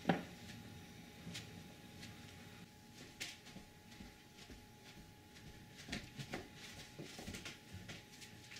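Soft thumps and fabric rustling from feet wrapped in a cotton pillowcase moving across carpet, with a sharper thump at the very start and a cluster of thumps near the end.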